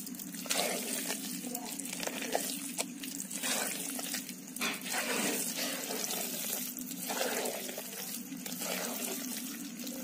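A hand squelching and stirring a wet, grainy rice-flour batter in a pot, in repeated irregular wet strokes.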